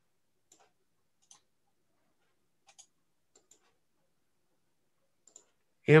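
A few faint, short clicks, scattered and irregular, some in quick pairs: a computer's mouse or keys being worked.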